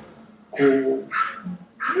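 Speech only: a man talking in Japanese, with short pauses between words, ending on a drawn-out expressive exclamation.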